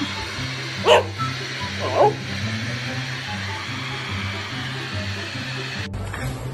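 A black-and-tan dog barks twice, about a second apart, over background music with a steady beat.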